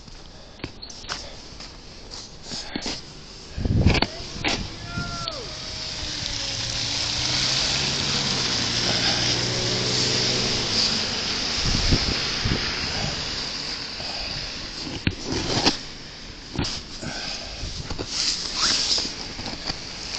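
Street traffic passing: a vehicle's engine and tyres swell over several seconds to a peak near the middle and fade again. Scattered knocks and rubbing come from the placard and coat brushing against a body-worn camera, the loudest a low thump about four seconds in.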